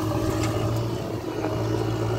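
JCB backhoe loader's diesel engine running steadily while the backhoe arm dumps a bucket of soil and swings back, with a few faint clicks about half a second in.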